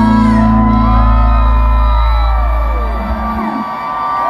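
A live rock band's last held chord ringing out, its low bass stopping abruptly about three and a half seconds in, while a crowd screams and cheers with many rising and falling whoops.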